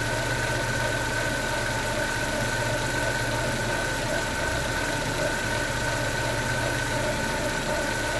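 Chevrolet Montana engine idling with a steady high whine from the timing belt and its tensioner pulley. The mechanic suspects the belt is over-tightened or the tensioner was turned clockwise instead of counter-clockwise, pressing the belt against the water pump; the noise is worse when the engine is warm.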